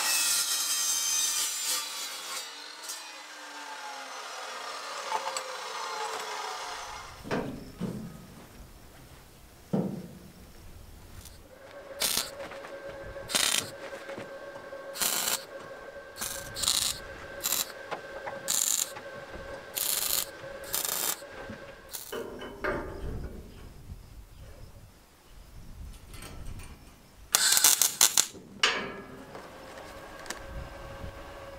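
Abrasive chop saw cutting steel square tubing, then its blade spinning down with a falling whine over the first few seconds. Later comes a series of short arcs from a MIG welder tacking the steel rack together, each lasting a second or less, over a steady hum, with a last cluster of arcs near the end.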